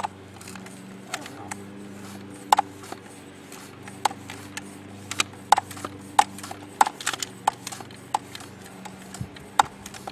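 Hand floor pump being worked in steady strokes, a sharp click with each stroke, about one every half second to second, pressurising a pneumatic cannon's air tank toward 100 psi.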